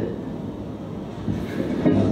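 Steady rushing rumble of ocean surf, played back through a hall's speakers.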